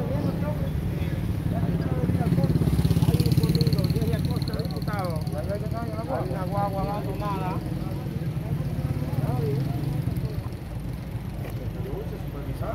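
An engine running steadily under indistinct voices, swelling louder about two to four seconds in.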